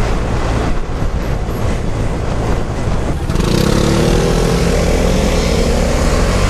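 Vespa Primavera scooter's small single-cylinder engine held at full throttle under wind and road rumble. About halfway through the engine's tone comes through clearly, a little louder and rising slowly in pitch.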